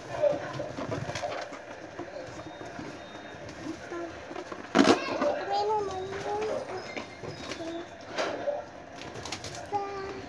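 Latex balloons bumping against the phone, with one loud thump about five seconds in. Around it come soft wavering pitched tones and faint voices.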